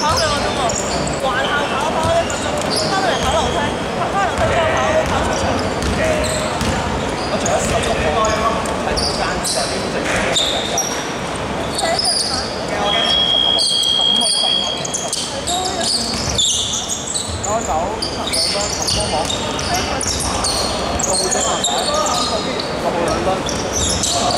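Basketball bouncing on a hardwood court in a large echoing sports hall, with sneaker squeaks and players calling out. A steady high tone is held for about a second and a half a little past the middle.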